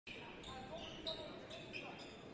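Basketball bounced on a hardwood court, a couple of distinct bounces about a second in and near the end, with faint voices echoing in the hall.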